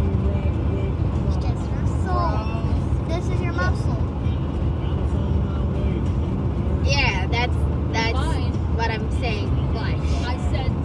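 Steady low road rumble of a moving car, heard from inside the cabin. Short stretches of a voice or laughter come about two seconds in and again around seven to nine seconds in.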